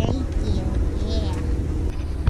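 Metal shopping cart rolling along a hard store floor, a steady low rumble from its wheels and basket, with a few brief bits of voice over it.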